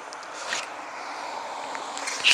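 Passing car traffic on a through street: a steady rush of road noise.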